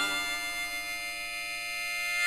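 Blues harp (diatonic harmonica) holding one long note that slowly gets quieter, ringing out at the close of a slow blues.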